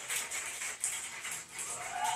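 Live audience clapping and cheering, heard through a TV's speakers in a small room.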